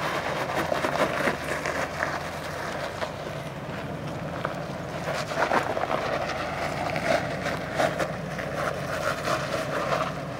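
Off-road Jeep's engine running steadily under load as it crawls up a steep rock slope, with scattered short clicks and crackles from the tyres on rock.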